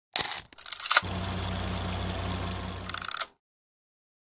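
Channel-intro logo sound effect. Two short clicking, rattling bursts come in the first second. Then comes a steady mechanical whirr with a low hum that pulses about four times a second, and it ends in a few clicks and cuts off suddenly a little after three seconds.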